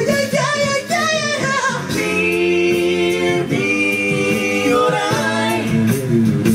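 Mixed a cappella vocal group singing live into microphones. In the first two seconds a lead voice sings with wide vibrato over the backing voices. Then the group holds sustained chords in several parts, with a short break in the middle.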